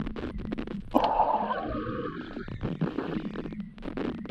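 Muffled underwater sound of swimmers in a pool: rapid crackling clicks and bubbling, with a sudden louder rush of water noise about a second in that slowly fades.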